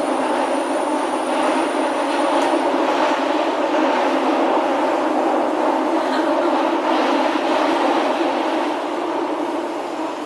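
Steady running noise inside a Shinbundang Line subway car: an even rumble and hum of the train in motion, with no distinct clicks or wheel squeals, easing slightly near the end.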